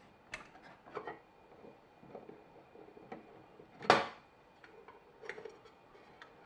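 Screwdriver undoing the single screw that holds the front cover of a solar charge controller, a few light ticks and scrapes, with one sharp clack about four seconds in as the tool or cover knocks against the case.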